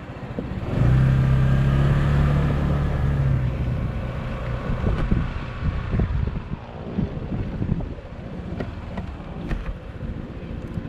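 Shineray Urban 150 scooter engine pulling away: its note comes up about a second in and holds steady for a few seconds, then eases off. The tyres rumble over the cobblestones throughout.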